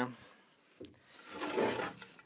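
A wooden board scraping against wood as it is moved: a light knock, then a scrape that swells and fades over about a second.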